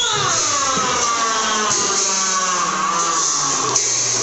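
A voice over the loudspeakers holds one long note that slides slowly down in pitch, with a single sharp knock near the end.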